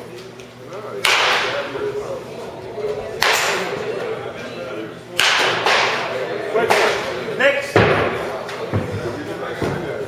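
Baseball bat hitting balls in an indoor batting cage: a series of sharp cracks roughly every two seconds, each ringing on briefly in the large hall.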